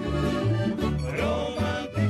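Tamburica folk band playing an instrumental passage: a plucked tamburica melody over a bass line that changes notes about twice a second.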